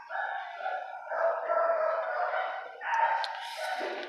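A dog howling and whining in about three long, drawn-out cries.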